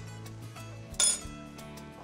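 One short, ringing clink about a second in: a metal measuring spoon tapping against a glass mixing bowl as the ground cinnamon is added. Soft background music plays underneath.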